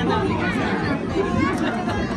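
Chatter of several people talking at once, no one voice clear.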